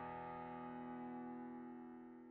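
Background music ending: a single held chord dying away and fading out.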